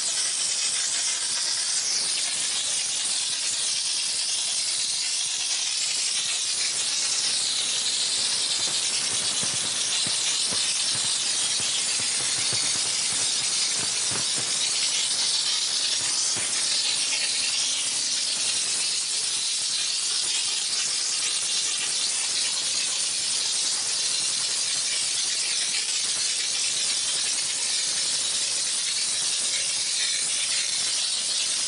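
Steady, unbroken hiss of a high-pressure steam jet from a 20-bar steam car washer's spray gun, played along a car's body panels.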